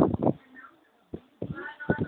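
A young child's voice with a series of short knocks and thumps, the loudest right at the start.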